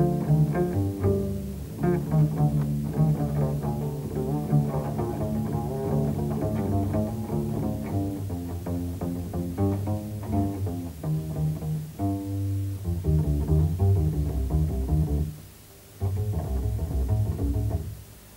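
Unaccompanied double bass solo, the strings plucked in quick runs of ringing low notes. It breaks off briefly about three seconds before the end.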